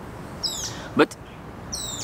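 A bird chirping outdoors: a high, falling chirp about half a second in and another near the end. A single short click sounds about a second in.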